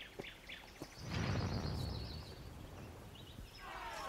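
Outdoor ambience with birds chirping in quick high notes for about a second. Near the end it gives way to a crowd of voices starting to chatter.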